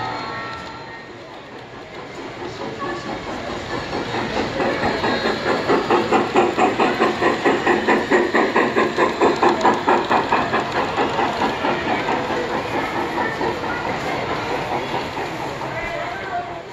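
Model steam locomotive running past with a rhythmic chuff of about four beats a second, growing louder and then fading.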